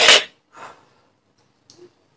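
A man breathes out hard in one short gust as he releases a held inhalation through a three-ball incentive spirometer, then takes a second, softer breath about half a second later.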